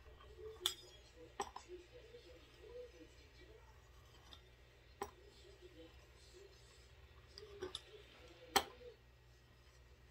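Knife blade clicking against a stone countertop as it cuts rolled spinach pasta dough into noodle strips: a few faint, sharp clicks spread out, the loudest a little before the end.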